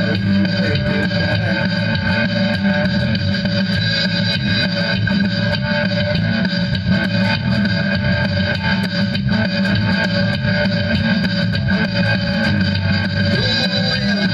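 Multitrack recording of electric guitar with an added bass guitar line, playing back from a Boss Micro BR-80 digital recorder. The music runs steadily throughout.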